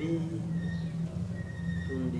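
Background music with a steady held low note.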